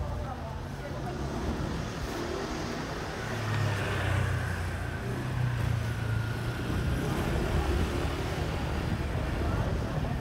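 Busy city street ambience: a motor vehicle's engine running close by, louder from about three and a half seconds in, over a steady background of voices.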